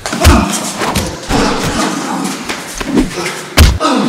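Blows landing in a hand-to-hand fight: a heavy thud about a third of a second in and another near the end, with lighter hits and short grunts between.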